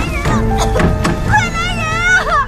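Dramatic score playing under a woman's high, strained cries for help, which start about two-thirds of the way through. A few sharp knocks sound early on.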